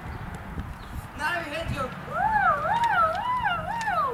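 A high, wavering vocal wail: after a short burst of voice sounds about a second in, a single voice swoops up and down about four times in a row.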